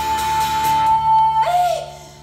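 A live cabaret song ending: one long steady high note held for about a second and a half, then a short note that rises and falls, and the music stops near the end.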